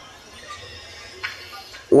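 A pause in a man's chanted Arabic sermon preamble: low background hum with one brief click a little past the middle, then his amplified chanting voice starting again right at the end.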